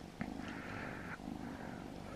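Domestic cat purring steadily and softly while being stroked, with a faint soft rustle in the first second.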